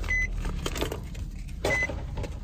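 A car's electronic warning chime sounding twice, short high beeps about a second and a half apart, over the low steady rumble of the car.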